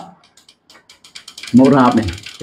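A quick run of faint clicks lasting about a second and a half, then a man's voice resumes.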